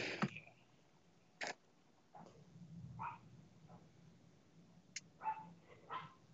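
Quiet room with two sharp clicks, one about a second and a half in and one near five seconds, typical of a computer mouse, and a few faint short calls between them.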